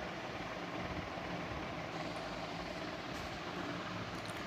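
Steady background noise: an even hiss with a faint low hum, unchanging, with no distinct events.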